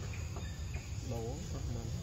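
Steady insect chorus with a low rumble underneath.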